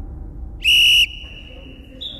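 Referee's whistle: one short, loud, steady blast of about half a second, signalling kick-off, with a fainter tone lingering after it.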